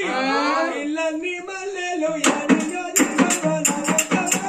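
Oggu Katha folk singing: a single voice holds a wavering, drawn-out line. About two seconds in, percussion comes in under it, with sharp jingling cymbal strikes about four a second and a low drum beat.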